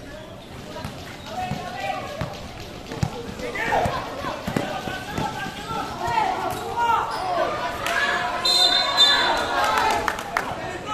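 Basketball bouncing on a concrete court amid the shouts of players and spectators, which grow louder from the middle on. A short high whistle blast comes near the end.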